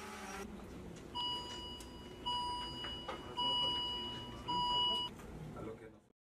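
Hospital bedside medical equipment beeping: four steady high beeps about a second apart, the last two loudest, over a faint murmur of the room.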